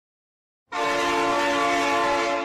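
A train whistle sound effect: one long blast of several pitches together, starting suddenly just under a second in and holding steady.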